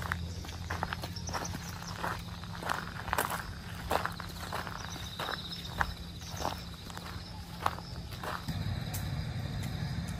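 Footsteps of heeled sandals walking on a gravel path and then paved ground, an uneven step or two a second, stopping about eight seconds in.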